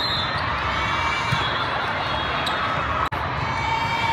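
The din of a crowded hall at a volleyball tournament: steady crowd chatter with volleyballs being hit and bouncing on the courts, a few sharp smacks standing out. The sound cuts out for an instant about three seconds in.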